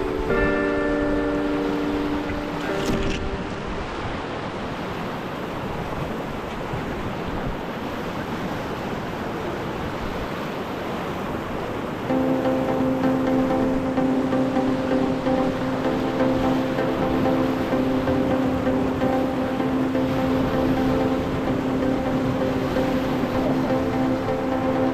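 River rapids rushing steadily. Background music plays over the first few seconds, drops out, then comes back about halfway through over the water noise.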